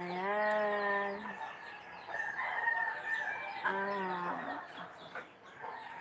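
Rooster crowing: one long crow at the start, and another shorter crow about three and a half seconds in.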